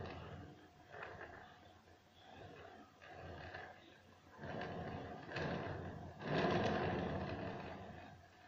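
Plastic cake turntable being turned in spurts while whipped-cream frosting is smoothed on the cake, giving a rough grinding scrape that swells and fades several times. The longest and loudest swell comes near the end.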